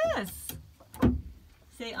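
The end of a rooster's crow, falling in pitch and cutting off just after the start, followed about a second in by a single sharp thump.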